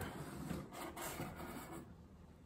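Faint rubbing and scraping of corrugated cardboard as a large box's lid is opened and its flaps handled.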